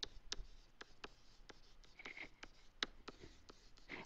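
Faint, irregular taps and light scratches of a stylus on a tablet as words are hand-written in digital ink, a couple of ticks a second.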